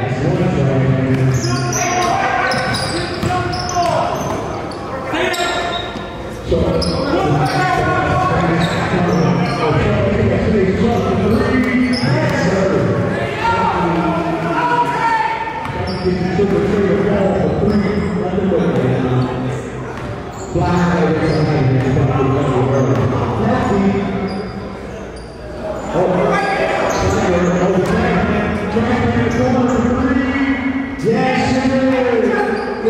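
Basketball bouncing on a gym floor during play, with voices echoing in a large hall.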